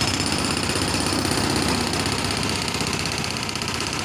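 Excavator running and working, a steady machine noise with a fast, even rattle.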